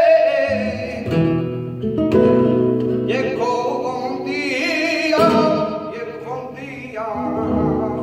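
Live flamenco: a male cantaor's ornamented, wavering sung line with a nylon-string flamenco guitar accompanying in strummed chords. The voice falls away just after the start, leaving the guitar's rasgueado strokes, and the singing returns in the middle.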